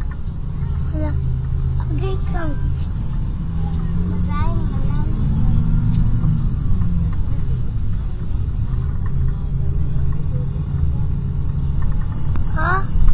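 Steady low rumble of a moving road vehicle, engine and tyre noise heard from inside the vehicle, with a few short snatches of voices in the first half.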